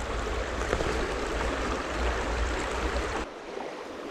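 Shallow stream rushing over stones, with a low rumble underneath. About three seconds in, the sound drops abruptly to a quieter flow.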